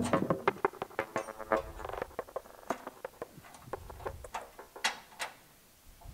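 Irregular metallic clicks and clinks, several ringing briefly, from a steel fuel tank strap knocking against its bolt and the car's underside as it is worked into place. The clicks thin out near the end. Music fades out at the start.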